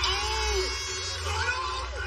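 Voices crying out "oh!" in dismay at an athlete's fall, twice, each a long call that rises and then falls in pitch, over a low rumble.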